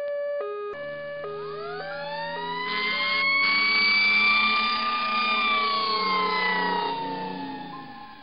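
Ambulance siren: a two-tone hi-lo siren switching pitch about twice a second, joined about a second in by a wail that rises slowly, peaks midway and falls away near the end.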